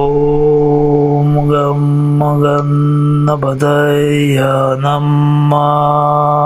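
A man's voice chanting a mantra on one long, steady held note, the vowel sound shifting as it goes, with a brief break about three and a half seconds in.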